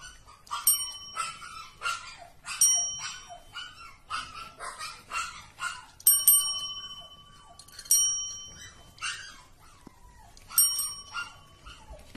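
Desk call bells tapped by kittens' paws, ringing about five times at uneven intervals. Short, high kitten mews come between the rings.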